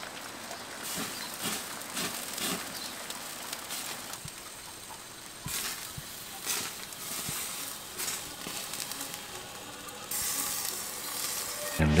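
Hot hardwood lump charcoal sizzling and crackling in a kettle grill under a spit-roasting chicken, with irregular small crackles over a steady hiss. The sizzle grows louder for the last couple of seconds.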